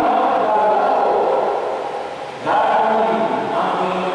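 Liturgical chant sung in long, held phrases, with a brief break about two and a half seconds in before the next phrase starts.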